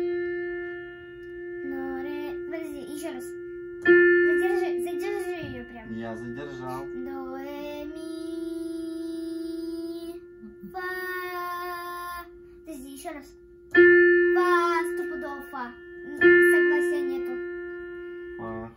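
Digital piano sounding the same single note three times, each strike ringing and fading: about four seconds in, then twice near the end. Between the strikes a girl sings a held note back to match it.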